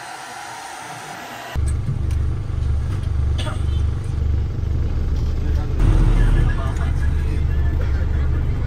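A handheld hair dryer running steadily, cut off suddenly about a second and a half in by the loud low rumble of a shuttle minibus's engine and road noise heard from inside the cabin while driving.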